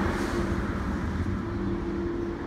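Road traffic on the street beside the shelter: a steady low engine hum with the rushing noise of passing vehicles, easing off slightly over the two seconds.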